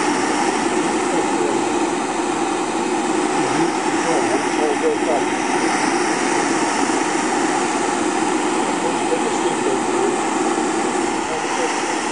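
Ceramic gas burner of a model steam boiler running with a loud, steady rushing noise that has no beat; the burner is overheating.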